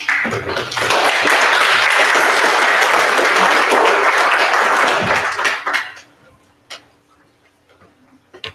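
Audience applauding for about six seconds, then dying away.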